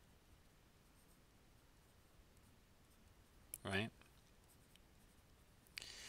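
Faint, light taps and scratches of a stylus handwriting words on a tablet screen, over near silence.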